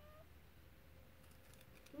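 Near silence: room tone, with a faint, thin, high vocal tone from the young girl trailing off at the very start.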